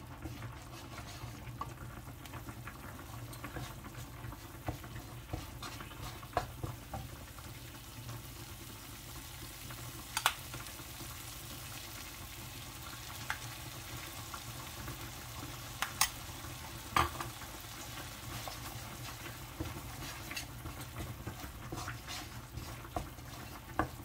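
Red curry paste sizzling as it fries in oil in a nonstick wok, stirred and scraped with a wooden spatula. The spatula knocks sharply against the pan a few times, loudest about ten seconds in and twice around sixteen to seventeen seconds in.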